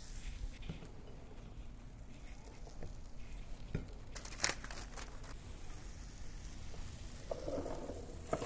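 Faint hiss and crackle from a preheated Hamilton Beach panini press's grill plate as buttered bread sits on it, with a few light taps of the sandwich being put together about halfway through.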